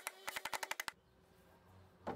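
Hammer rapidly striking nail ends on a hardwood fence-paling panel, clinching them flat: about a dozen sharp knocks in quick succession that stop about a second in.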